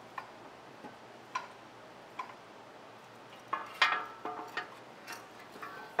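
Scattered light clicks and taps, then a cluster of sharper metallic clinks with a brief ring about halfway through: hand tools and metal parts being handled during a subframe and oil pan removal.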